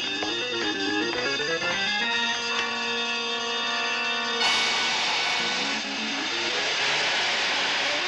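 Background TV score: a quick run of stepping notes, then a held chord. About four and a half seconds in, a loud hiss of steam starts suddenly and runs on over the music: the compressed-steam Batpole lift going off.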